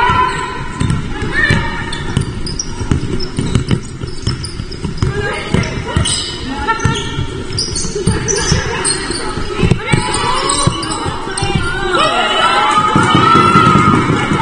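A basketball being dribbled on a wooden sports-hall court, a run of sharp bounces, with shoes squeaking and players calling out, echoing in the hall.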